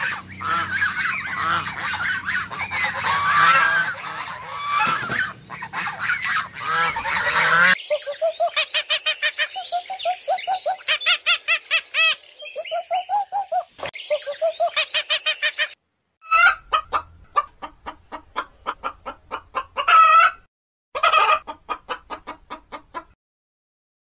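A flock of gulls calling over one another for about eight seconds. Then come runs of short, rapid repeated calls, several a second, broken by brief pauses.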